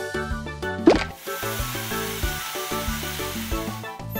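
Bouncy children's cartoon music with a magic-wand sound effect: a quick rising swoop about a second in, then a sustained sparkling hiss over the music as a dinosaur egg hatches.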